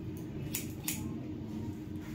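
Hair-cutting scissors snipping through hair, a few separate snips about half a second apart.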